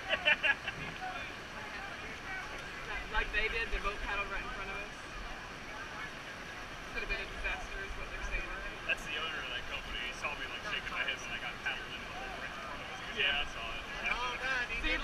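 Steady rush of whitewater rapids, with people's voices talking and calling out on and off over it.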